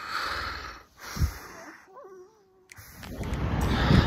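A breathy exhale, then a soft thump about a second in, followed by a short wavering voice-like moan. After a cut near the end, steady street noise rises.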